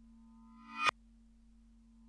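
Eerie horror-score sound design: a low steady drone under a reversed-sounding ringing swell that grows louder and cuts off sharply just before the middle, with the next swell starting to build near the end.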